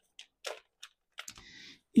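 A few faint, light clicks spaced irregularly, then a short soft hiss near the end.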